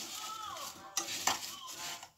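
A spoon stirring chopped apples coated in sugar and cinnamon in a saucepan: a steady scraping and rustling, with a couple of knocks against the pot about a second in.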